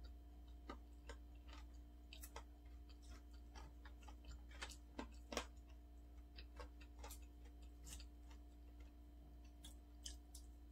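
Near silence with faint, irregular small clicks and crackles from closed-mouth chewing and fingers peeling the skin off a boiled root crop, over a steady low hum.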